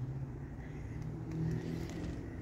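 A steady low engine hum, the drone of a motor running nearby.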